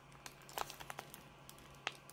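Faint crinkling and small clicks of a trading-card hanger pack's plastic wrapper handled between the fingers, with a sharper click near the end.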